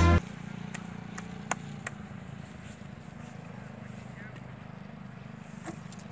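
Music cuts off at the very start, leaving a steady low background rumble with a handful of faint, sharp clicks.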